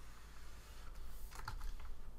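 A few computer keyboard keystrokes: a quick cluster of clicks about one and a half seconds in, over a low steady hum.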